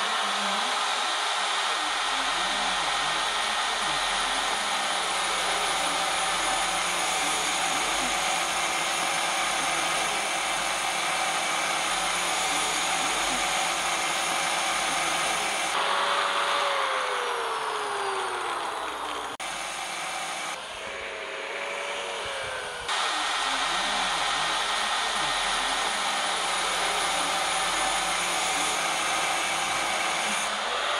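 Handheld angle grinder with a thin cut-off wheel running and cutting through a steel motorcycle brake disc: a steady high motor whine over a grinding hiss. About halfway through, the motor's pitch sags for a few seconds and the sound briefly drops in level.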